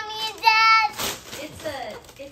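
A young child's high, sing-song vocalizing, with no words: two held notes, the second and loudest about half a second in, then shorter sliding sounds. A short rustle of wrapping paper comes about a second in.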